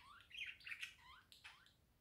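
A bird chirping faintly: a quick run of short calls that sweep up and down in pitch, stopping near the end.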